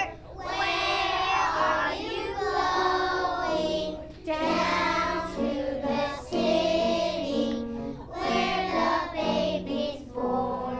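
A group of young children singing a Christmas carol together, in short sung phrases.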